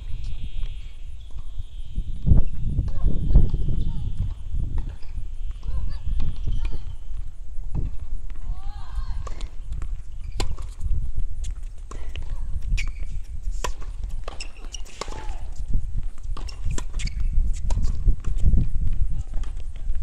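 Tennis rally on an outdoor hard court: repeated sharp knocks of the ball being struck by rackets and bouncing, with footfalls on the court. Under them runs a loud, uneven low rumble.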